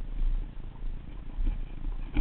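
Low, uneven rumbling handling noise from a fishing rod and its small baitcasting reel, picked up by a camera mounted on the rod as it is held and worked.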